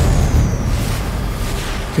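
Trailer sound design: a deep boom right at the start that fades away over about two seconds, with the score faintly underneath.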